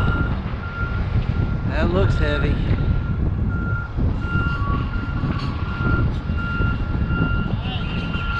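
Vehicle backup alarm on a large yard forklift beeping repeatedly at one high pitch, over a steady low engine rumble.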